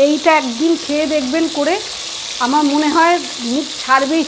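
Food frying in hot oil in a pan: a steady sizzle.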